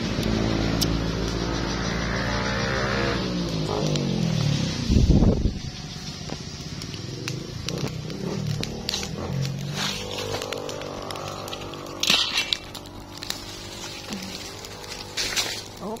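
A motor vehicle passes on the road, its engine note steady and then falling in pitch, loudest about five seconds in. After it has gone, a leaf fire crackles with scattered sharp pops.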